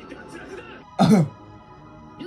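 A person clears their throat once, sharply, about a second in, over the anime soundtrack playing quietly with music underneath.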